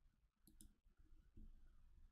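Near silence: faint room noise with a soft double click about half a second in, a computer mouse button being clicked.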